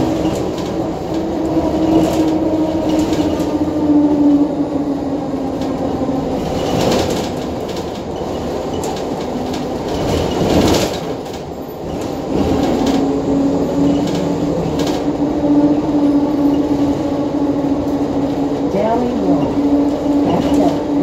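Interior ride noise of a 2014 NovaBus LFS hybrid-electric city bus with a Cummins ISL9 diesel and Allison EP40 hybrid drive, under way. A steady drivetrain tone drops in pitch for several seconds around the middle, then comes back. A couple of knocks and rattles from the body sit over the road noise.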